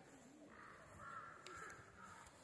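A crow cawing faintly: a harsh call held for about a second and a half, starting about half a second in.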